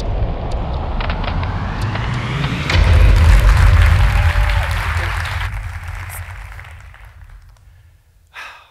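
Intro sting of a TEDx talk: a rising whoosh swells into a deep boom about three seconds in, which then dies away over the next few seconds.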